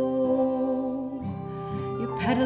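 A woman singing one long held note with vibrato over a strummed acoustic guitar. The note ends just past a second in, leaving the guitar strumming on its own.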